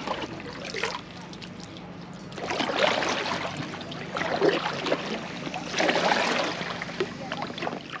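Kayak paddle blades dipping and splashing in the water of an inflatable kayak being paddled, coming in several louder bursts a second or so apart.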